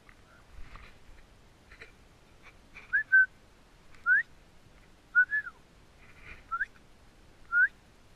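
A person whistling a string of short rising notes, about one a second, a couple of them two-note, in the way one calls a dog.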